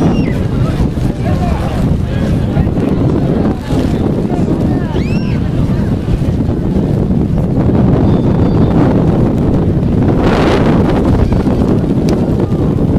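Wind buffeting the microphone in a loud, steady low rumble, with scattered distant voices calling out across an open rugby pitch.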